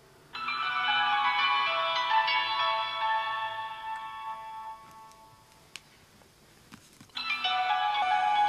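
Nokia slider mobile phone ringing with an incoming call: a melodic ringtone plays for about four and a half seconds and fades, then starts again after a short pause, with a few faint clicks in between.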